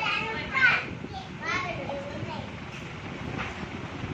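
Young children's voices talking and chattering, clearest in the first couple of seconds, over a general classroom babble.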